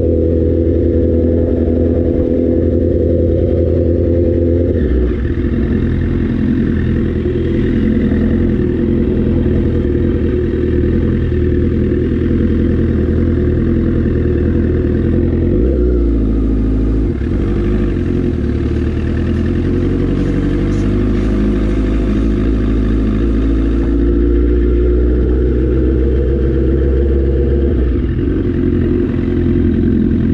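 Motorcycle engine running at low city speed, its pitch shifting a few times with throttle and gear changes.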